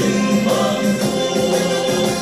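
Choir singing a Vietnamese soldiers' song over full band accompaniment, with a steady beat.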